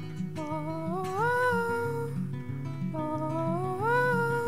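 Acoustic guitar picked in a steady pattern under a wordless sung "ooh" from the singer, a note that slides up in pitch and holds, twice.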